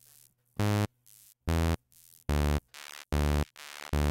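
Short, identical sawtooth synth notes from Arturia Pigments' analog engine, repeating about every 0.8 s. Between them come quieter, thinner echoes from the pitch-shifting delay, whose high-pass filter is being raised so the echoes lose their low end.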